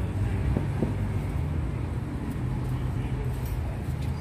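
Daewoo Nexia's 1.6-litre 16-valve E-TEC four-cylinder engine idling steadily, with two light clicks from the throttle-body fittings under a second in.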